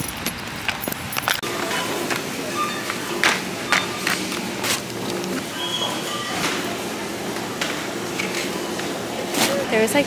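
Supermarket ambience: indistinct background voices and scattered knocks and clatter, with music playing underneath in held notes.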